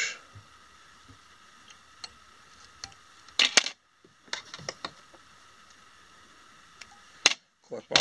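Metal fly-tying tools handled at the vise after a whip finish: a short clatter of sharp clicks about three and a half seconds in, a few lighter clicks after it, and one sharp click near the end, over a faint steady high hum.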